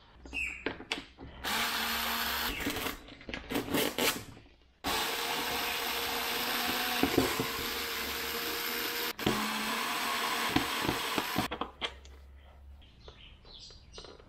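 Small cordless electric screwdriver running in bursts as it undoes screws to take a foam RC plane's wing apart. It gives a steady motor whine: a short run about a second and a half in, brief blips around four seconds, then a long run of about four seconds and a second of about two seconds.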